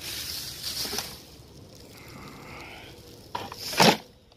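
Thin plastic trash bag rustling as it is gripped and handled, with a short, louder burst of rustling near the end.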